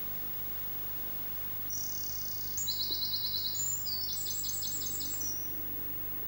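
A small songbird singing one high, fast trilling phrase about four seconds long, starting a little under two seconds in, over a steady low background hiss.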